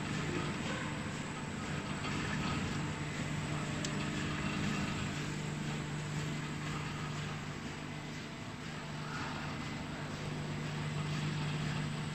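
Plastic packing-net extrusion and winding machine running with a steady low hum.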